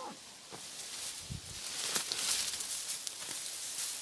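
A cassava plant being pulled up by hand from dry soil: rustling and crumbling of earth and stems, with a few low thumps in the first two seconds, the rustle getting louder in the second half as the root comes free.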